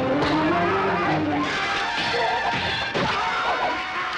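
Dramatic soundtrack music under a staged sword fight, with a few sharp hits of blows and sword clashes in the second half.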